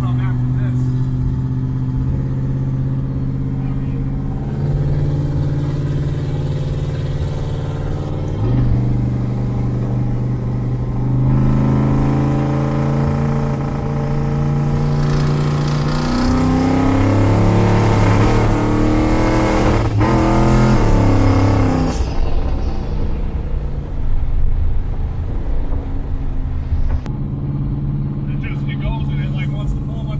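In-cabin sound of a twin-turbo 427ci LSX V8 in a Buick Skylark street car under way, its engine droning steadily with a few changes in pitch. Partway through the engine note climbs and gets louder under throttle, then drops off sharply about 22 seconds in.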